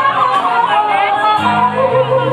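Live R&B band with a singer holding and bending notes in wavering runs; low bass notes come in about one and a half seconds in.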